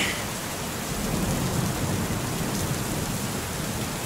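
Steady rain with a low rumble of thunder underneath.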